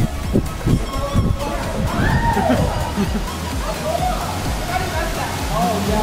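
Water running down an artificial rock waterfall in an exhibit's simulated flash flood, a steady rushing with a low rumble, with excited voices over it in the second half.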